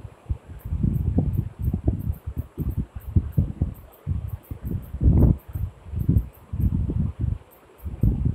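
Irregular dull low thumps and rustling from a phone being handled and tapped while typing on its touchscreen keyboard, picked up by the phone's own microphone.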